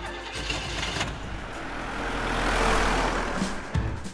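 Vehicle engine sound effect, a rushing engine noise that swells to a peak past the middle and then dies away.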